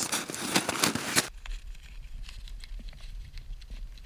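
Snowshoes crunching and scraping on crusted snow, a dense crackle for the first second or so. It cuts off abruptly to a low wind rumble on the microphone with a few faint crunches.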